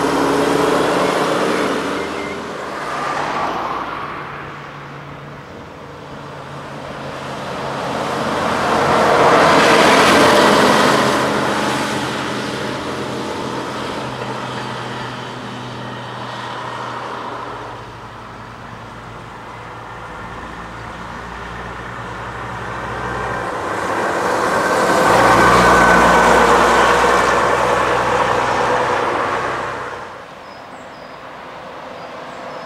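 Diesel double-decker buses driving past, one after another. A steady low engine note is joined by road noise that swells as each bus passes, loudest about a third of the way in and again near the end.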